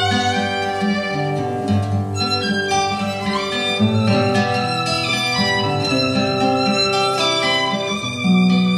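Violin playing a melody over plucked guitar accompaniment, with the violin sliding up in pitch a little over three seconds in.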